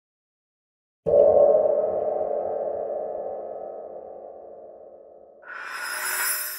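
Electronic logo sting: a synthesized tone strikes suddenly about a second in and fades slowly over several seconds, then a brighter swell rises near the end.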